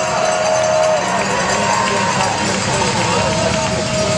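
Arena crowd noise, with one long drawn-out voice-like call that ends about a second in and another that starts near the end.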